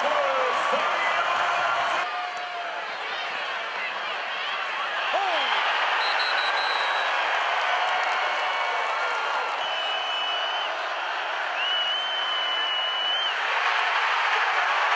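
Large football stadium crowd cheering: a dense, steady din of many voices and clapping, with a brief dip about two seconds in. Two long, high whistle tones sound near the end.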